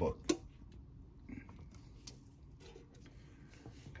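One sharp click just after the start, then faint light clicks from hands handling a heat press.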